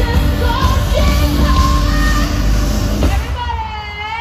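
Live K-pop song played loud over a stadium sound system, recorded from among the audience: a heavy bass beat under a sung vocal line. About three seconds in the beat drops away, leaving a held, wavering vocal note.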